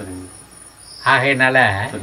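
Crickets chirring, a thin, steady high-pitched sound that carries on without a break, with a man's voice coming back in about a second in.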